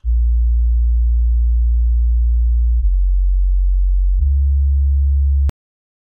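Deep sine-like sub-bass synth patch in Xfer Serum playing three long, low notes on its own: the second note is lower and the third steps back up. It cuts off abruptly near the end with a click.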